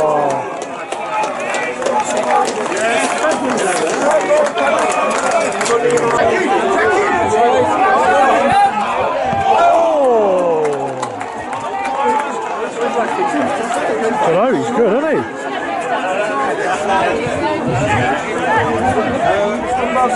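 Crowd chatter at a football pitch: many voices talking and calling out over one another, none clear, with a long falling shout about ten seconds in.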